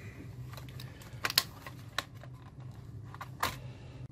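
Plastic casing of a Toshiba Portege R930 laptop being pried apart: a handful of sharp clicks as the clips let go, the strongest about a second and a quarter in and near the end, over a low steady hum.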